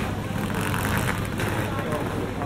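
Crowd ambience of a busy pedestrian shopping street: passers-by talking indistinctly over a steady low rumble.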